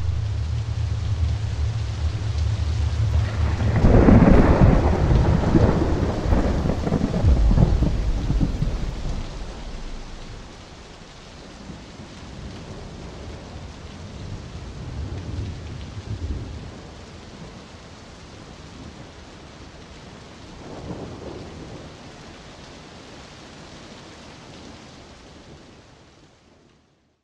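Steady rain with a loud peal of thunder about four seconds in that rolls on for several seconds, then fainter rumbles later on. A low steady hum stops as the first thunder starts, and the rain fades out at the end.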